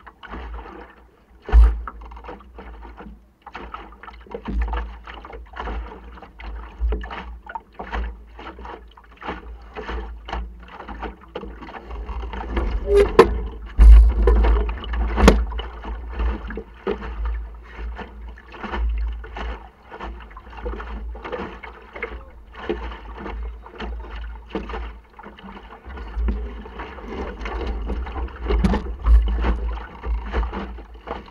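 Wind buffeting the microphone and water splashing and lapping against the hull of an Optimist dinghy under sail, with frequent sharp knocks and taps from the boat and its rigging, loudest about halfway through.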